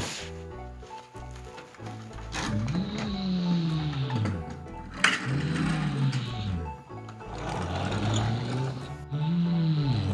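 Three rising-and-falling engine-revving sounds, each lasting about a second and a half, go with toy construction trucks being moved. Background music plays under them.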